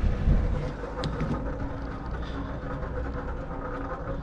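Grain auger running steadily, with shelled corn pouring off it into a grain bin: a continuous mechanical rattle over a low hum.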